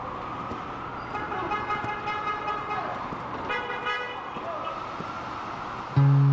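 City street traffic noise, a steady hum, with two sustained tooting horn tones: a longer one from about a second in and a shorter one near four seconds in.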